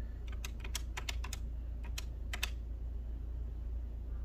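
About a dozen quick plastic key presses on a calculator as sums are tapped in: a fast run of clicks, a short pause, then a few more before they stop halfway through.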